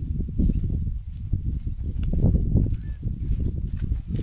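Low, gusty rumble of wind buffeting the microphone, with irregular thumps.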